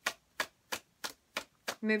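Tarot cards being overhand-shuffled: packets of cards tapping against the deck in an even rhythm, about three crisp clicks a second.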